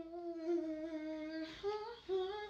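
A voice humming a long held note, then stepping up to a higher note near the end.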